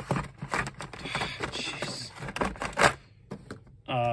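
Carded diecast cars in plastic blister packs being handled and slid over one another on a table: a run of scrapes, rustles and clicks, with one louder clack a little before three seconds in, then a short lull.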